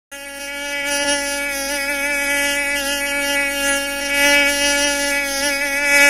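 Mosquito buzzing in a steady, thin whine with a slight waver in pitch, swelling in over the first second.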